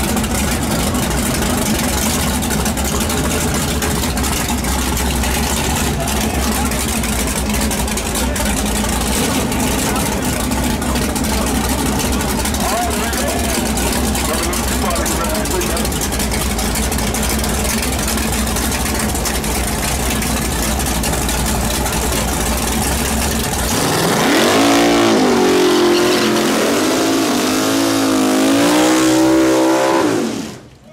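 Drag car's engine running steadily with a deep rumble, crowd voices mixed in; about six seconds before the end it is revved up and down several times.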